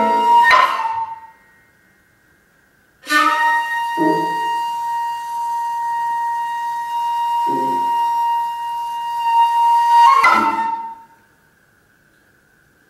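Shakuhachi playing. A phrase dies away about a second in, and after a pause one long held note sounds from about three seconds in, ending in a quick flourish a little after ten seconds. Two brief lower sounds cut in under the held note.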